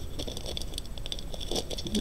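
Jewelry being handled on a cloth: beads and small metal pieces giving scattered light clicks and rattles, with a soft rustle.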